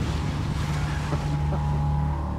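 Outboard motor idling with a steady low hum, with wind noise on the microphone.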